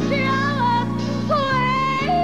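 Gospel song: a woman sings long, sliding high notes over sustained backing chords, which shift near the end.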